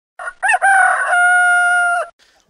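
Rooster crowing: two short notes, the second rising and falling, then one long held call.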